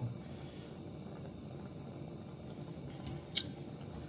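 Gas blowtorch flame hissing steadily as it heats a copper pipe tee joint for soldering, with a single sharp click a little over three seconds in.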